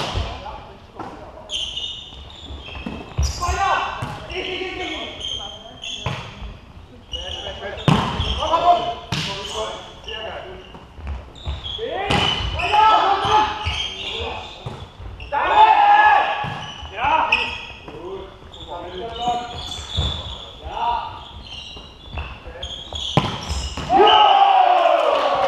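Volleyball play in a large echoing sports hall: sharp slaps of the ball being struck and hitting the floor, spread through the rally, among the players' shouted calls.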